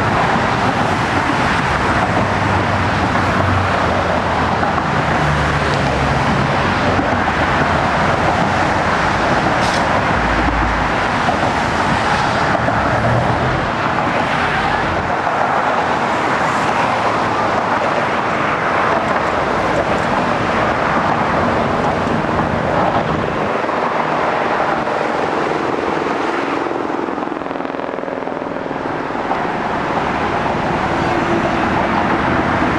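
Steady road and traffic noise of a moving car, an even rushing sound of tyres and engines that eases slightly near the end.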